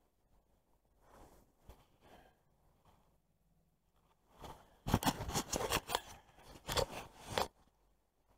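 Close rustling and scraping handling noise on a body-worn camera, gloved hands and jacket working a rod and reel. It starts about halfway in, runs in irregular clicks and scrapes for about three seconds with a short break in the middle, and stops shortly before the end.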